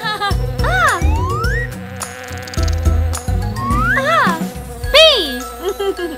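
Cartoon bee buzzing sound effect, a steady drone, over bouncy children's music with a regular bass beat. Several swooping sounds rise and fall in pitch, the loudest about five seconds in.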